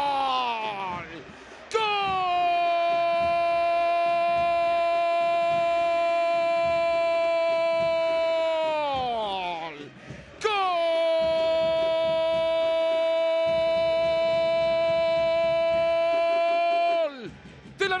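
A football commentator's drawn-out goal shout, the long 'gooool' of a Spanish-language broadcast. Two long held calls of about seven seconds each, each sliding down in pitch as it ends.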